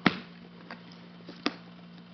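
Sharp clicks and faint ticks of brass roller buckles and leather straps being handled on a canvas knapsack: one sharp click at the start, another about a second and a half in.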